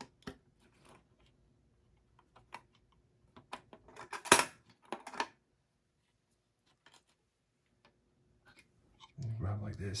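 Small metal clicks and snaps from a desktop CPU socket as its wire retention lever is unhooked and the metal load plate is swung open, a handful of clicks with one sharp snap a little past the middle.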